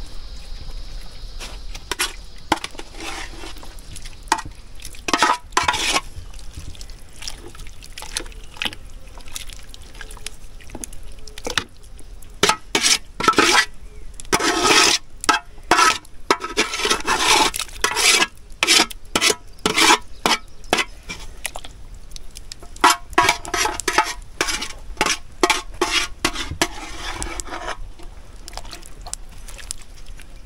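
A metal ladle scraping and clinking against cooking pots while a thick stew is poured and scraped from one pot into an aluminium pot, with liquid splashing. The scrapes come in quick runs, densest through the second half.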